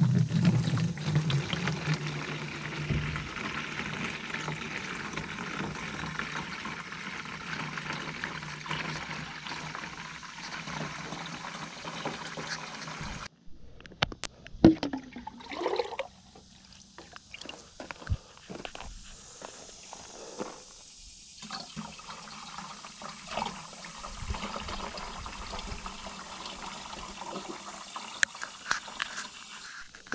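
Liquid poured from a plastic pitcher into a plastic watering can: a steady splashing pour for about thirteen seconds that cuts off abruptly. After that come scattered sloshes and splashes as the pitcher is dipped into a bucket of worm-casting tea.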